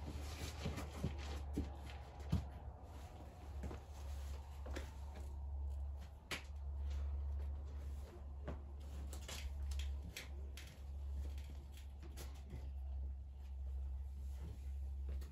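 A bouldering climber's hands and rubber-soled shoes scuffing and tapping on granite in short, irregular clicks and knocks as he moves through an overhang, over a steady low hum.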